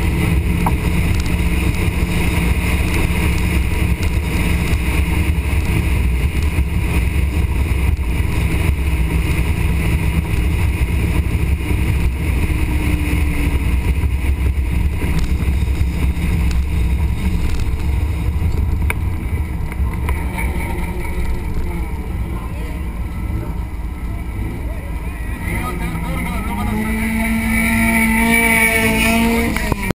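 Dodge Viper's V10 engine running at low speed as the car rolls along, a steady low rumble. Voices close by near the end.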